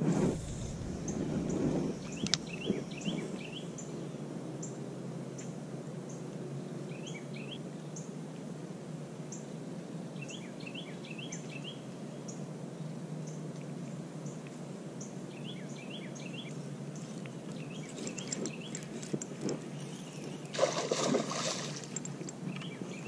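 Outdoor ambience by a pond: a steady low rush, with a small bird calling in short runs of three or four quick chirps every few seconds. A brief burst of noise comes near the end.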